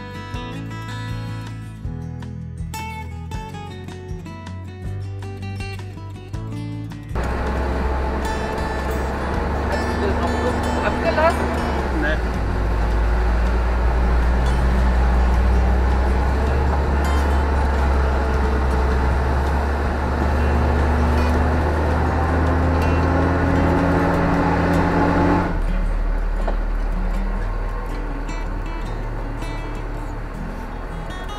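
Plucked-guitar music for the first seven seconds, then the Bucher Duro II 6x6 truck driving a rough dirt track: a loud, steady engine and road rumble with a whine that rises just before it drops away sharply about 25 seconds in.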